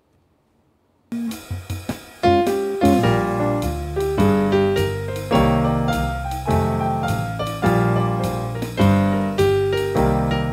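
Roland GO:PIANO digital piano starting a jazz-blues tune about a second in, after near silence: a few opening notes, then from about two seconds in, steady rhythmic chords over a bass line.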